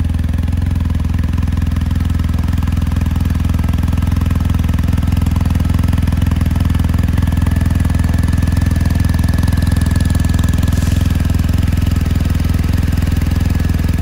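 BMW R1250GS's 1254 cc boxer-twin engine idling steadily and loudly, just started after an ACF50 anti-corrosion treatment so that the excess spray burns off the hot engine and exhaust.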